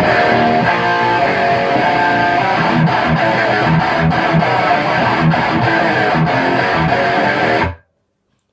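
Electric guitar played through a Sinvertek distortion pedal into the clean channel of a Bogner Atma amp with the bright switch on: a distorted riff with rhythmic low notes that stops abruptly near the end.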